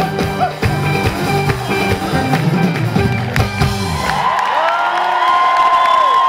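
Live Kabyle band music with a steady drum beat, which stops about four seconds in and gives way to a crowd cheering and whooping.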